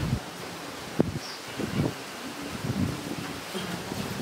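Wind and rustling leaves in dense trees, with one sharp knock about a second in and a few faint low sounds after it.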